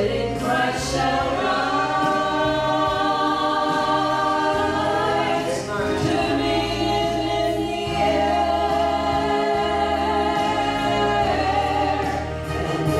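Three women singing a gospel song together in harmony through microphones, holding long notes.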